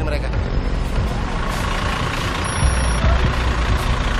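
Steady street noise of traffic and a heavy vehicle's engine running, with a deep rumble underneath.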